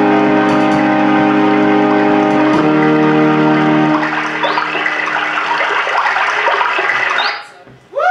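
Electronic keyboards holding sustained chords, changing chord twice, which stop about four seconds in; then applause and voices from the audience, dying away just before the end.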